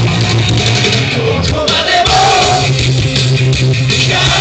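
A live rock band playing, with electric guitar, a steady bass line and singing; a singer holds a long note a little over two seconds in. The recording is rough and low in quality.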